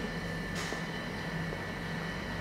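Steady low room noise of a small shop: a constant hum and hiss with a faint, steady high tone, and no clear foreground sound.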